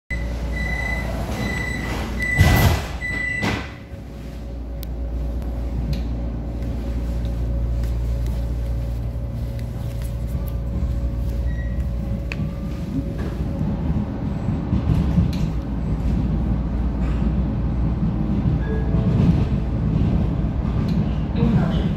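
Vienna U-Bahn Type V train: a run of high warning beeps as the doors close, two loud knocks of the sliding doors shutting, then the train pulling away with a steady low rumble and a faint motor tone that grows louder as it gathers speed.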